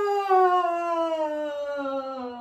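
A woman's long, noisy yawn, sung out as one unbroken note that slides steadily down in pitch.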